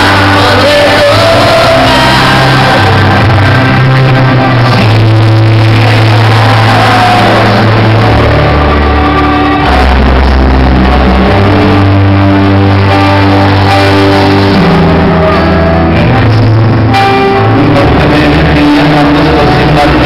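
Loud live band music: a male singer at a grand piano, with drums and congas, in a large hall.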